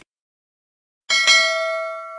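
Notification-bell sound effect: a bright bell ding struck twice in quick succession about a second in, ringing on and slowly fading.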